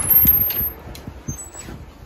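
Metal-framed glass entrance door being pushed open, with a burst of rushing noise in the first half second or so that then dies down to a few faint knocks.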